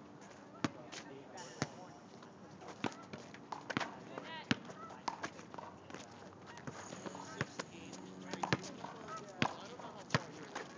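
Basketball bouncing on an asphalt court, a string of sharp, irregularly spaced bounces, with faint players' voices in the background.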